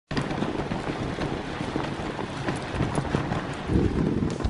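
Three Siberian huskies running in harness ahead of a dog sled: a quick, irregular patter of paws striking the packed snow over a steady rushing noise from the sled moving over the trail.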